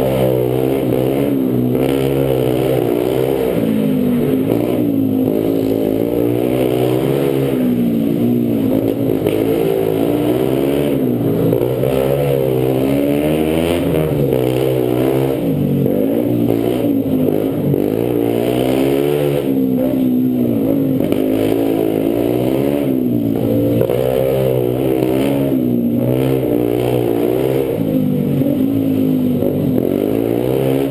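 Small mini dirt bike engine heard from on board, revving up and down over and over as the bike accelerates out of and brakes into tight turns, its pitch rising and falling every second or two.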